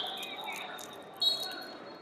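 A referee's whistle: a high steady tone dying away at the start, then a louder, sharper blast about a second in, lasting under a second, over background chatter in a large hall.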